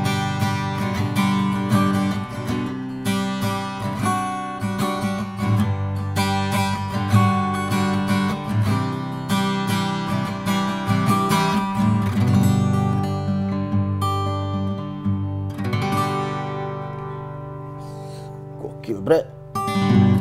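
Vester-by-Segovia acoustic guitar with a solid spruce top and mahogany back and sides, played unplugged, with chords strummed in a steady rhythm. Near the end the last chord is left ringing and fades away.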